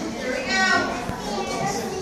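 Young children's voices chattering and calling out, with one high voice loudest about half a second in.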